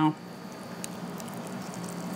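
Quiet kitchen room tone with a faint steady hum and a single soft click as a cheese taco shell filled with pulled chicken is handled and raised to the mouth for a bite.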